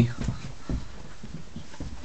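Footsteps going up a staircase: a few soft thuds about half a second apart.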